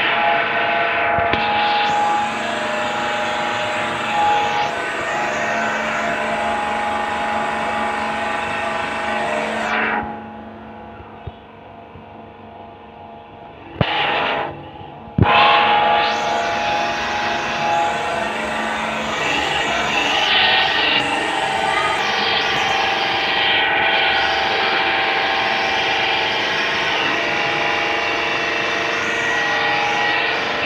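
Electric pressure washer's motor and pump running, a steady machine hum. It cuts out for about four seconds near the middle and starts again abruptly.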